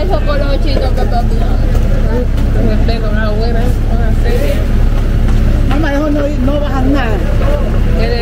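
A garbage truck's engine running steadily close by, with voices talking over it.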